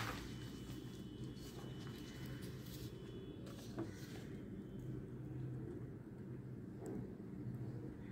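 Faint snips of scissors cutting through paper, a few soft clicks over a steady low hum.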